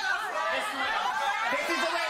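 Several voices talking and calling out over one another.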